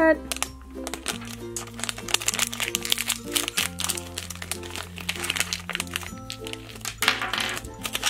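Plastic foil blind-bag packet crinkling as it is handled and torn open by hand, over steady background music.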